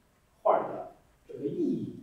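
A man's voice making two short, low vocal sounds about a second apart, with no clear words.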